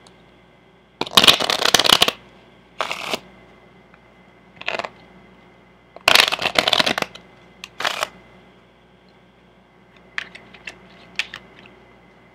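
A deck of playing cards being shuffled by hand in separate bursts. There is a long one about a second in, short ones around three and five seconds, another long one around six seconds and a brief one near eight seconds, then a few light card clicks near the end.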